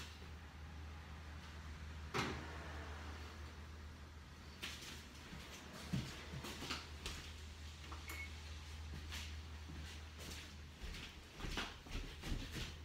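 Oven door and rack being handled: a sharp knock about two seconds in, then scattered light clicks and knocks, over a steady low hum.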